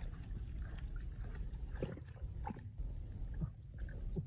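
Bare hands digging and scraping in wet soil and grass roots, with a few short scrapes and rustles about two and three and a half seconds in, over a steady low rumble.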